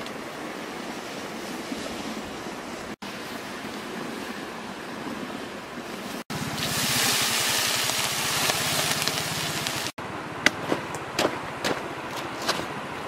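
A steady wash of outdoor noise as whole fish are laid onto banana-stalk pieces in a large wok over a wood fire, growing into a louder hiss after the middle. Near the end a knife strikes a banana leaf in a run of quick, sharp chops.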